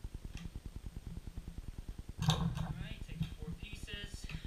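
White PVC pipe and fittings being handled and fitted together: a loud clatter a little over two seconds in, then short squeaks of plastic on plastic, over a fast, even low pulsing in the background.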